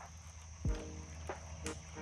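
Faint, steady high-pitched trill of crickets or other insects calling around the pond, with one brief low sound about two-thirds of a second in.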